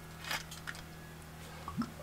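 A few faint, brief clicks and scrapes from handling a glass olive oil bottle and its cap, over a low steady hum.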